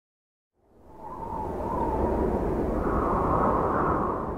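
Cinematic logo-intro sound effect: a rushing, wind-like whoosh over a deep rumble. It swells in from silence about half a second in, holds steady, and starts to fade near the end.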